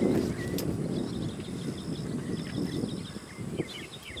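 Outdoor ballfield ambience: a noisy low rumble, loudest at the start, with a single sharp knock about half a second in and small birds chirping near the end.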